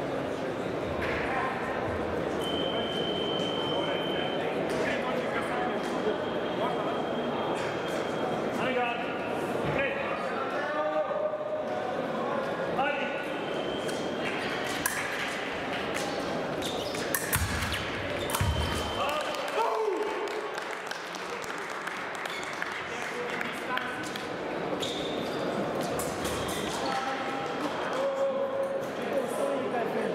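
Épée fencers' footwork on the piste in a large sports hall: scattered stamps and knocks with a few brief high squeaks, over a steady murmur of voices.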